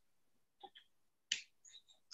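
A few faint, short clicks, the sharpest a little past a second in.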